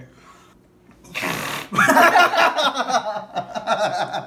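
Breath blown hard into a wad of homemade gummy-bear slime in a failed attempt to blow a bubble: a short rush of air about a second in, then about two seconds of rough, wavering buzzing.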